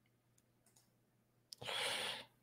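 Near silence at a desk microphone with a few faint clicks, then a sharp click and a short breath-like hiss near the end.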